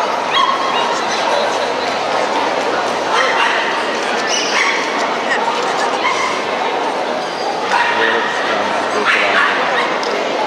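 Dogs barking and yipping here and there over a steady murmur of crowd voices.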